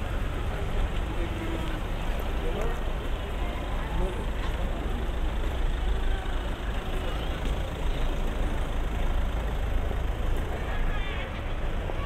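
City street traffic: cars driving past close by, a steady low rumble of engines and tyres.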